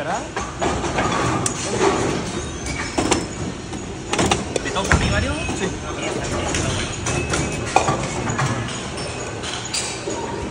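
Busy bowling alley: a steady rumble of balls rolling down the lanes under background chatter, with scattered sharp knocks and clatters of balls and pins.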